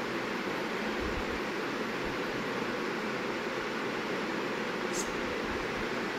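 A steady, even hiss of background noise, with a couple of faint low thuds about one and two seconds in and a brief faint tick near the end.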